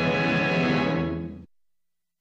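Orchestral end-title music of a 1940s film score holding its final chord, which fades and cuts off about one and a half seconds in.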